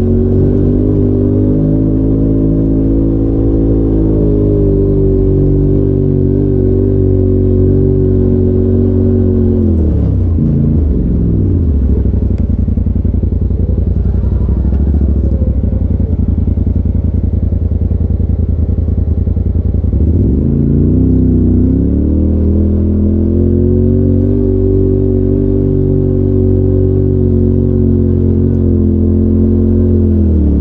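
Polaris RZR side-by-side's engine heard from inside the cab, running at a steady pitch under throttle. About ten seconds in it drops off to a low, pulsing run, then climbs back up about twenty seconds in and holds steady again before easing off near the end.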